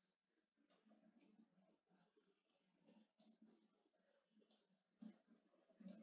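Near silence: quiet room tone with about half a dozen faint, irregular clicks from writing on a computer whiteboard.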